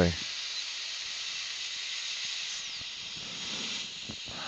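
A steady high hiss, with no drill whining.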